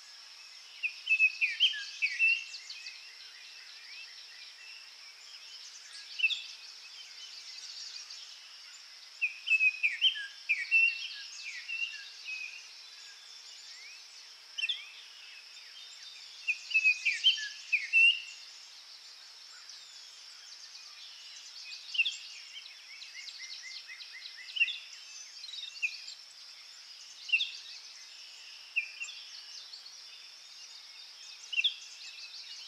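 Songbirds singing outdoors: short phrases of chirps, falling notes and quick trills come every few seconds, several close together around a third and again just past halfway. A steady high-pitched hiss runs underneath.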